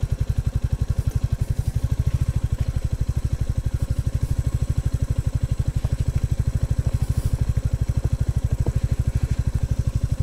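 Royal Enfield Classic 350's single-cylinder engine running at low revs as the bike is ridden slowly along a rocky track, with a slow, even beat of firing pulses.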